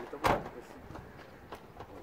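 A single brief thump about a quarter second in, followed by quiet outdoor background.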